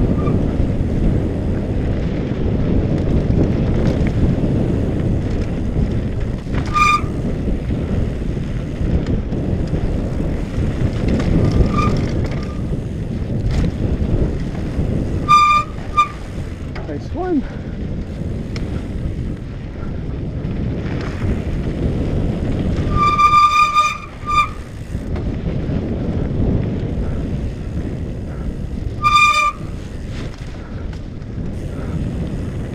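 Wind buffeting a helmet camera's microphone, with tyre rumble on a dirt trail, as a mountain bike descends. Short high-pitched mountain bike brake squeals cut in about 7, 12, 15, 23 and 29 seconds in, the longest around 23 to 24 seconds in.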